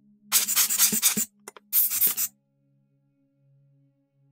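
Rubber rocket air blower puffing air onto a camera lens to blow off loose dust: two short hissing puffs, the first a little longer, with a couple of faint clicks between them.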